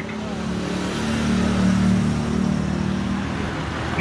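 A road vehicle's engine running as it passes close by, a steady low hum that grows louder to about halfway through and then eases off slightly.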